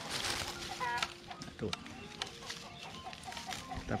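Chicken clucking, with a short pitched cackle about a second in, over the rustle and crackle of clove-tree leaves and twigs being handled; a brief laugh comes at the start.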